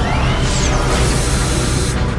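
Cinematic sound design over an orchestral film score: a loud rushing wall of noise with a deep low rumble and a sweeping whoosh about half a second in, the hiss dropping away at the end.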